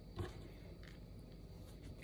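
Faint handling sounds of hands folding a thin spring roll (lumpia) wrapper on a table, with one brief soft sound just after the start.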